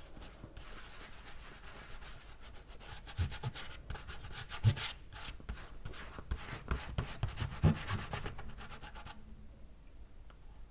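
A bare hand rubbing and smearing wet paint across paper on a table, a continuous scratchy rubbing with a few thumps, stopping about a second before the end.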